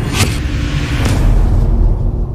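Cinematic logo-reveal sound effect: a loud deep rumble with two whooshes about a second apart.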